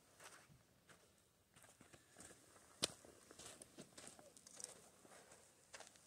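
Near silence, broken by faint scuffs and taps of climbing shoes and hands on granite as a boulderer moves between holds, with one sharp click about three seconds in.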